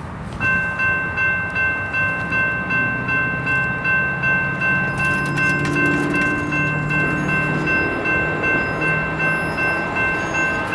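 Railroad crossing bell starts ringing about half a second in and keeps striking at about two and a half strikes a second as the crossing gates lower. A low drone sits underneath from about three seconds in.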